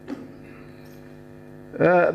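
Steady electrical mains hum in the sound system, with a brief click at the start; a man's voice starts speaking near the end.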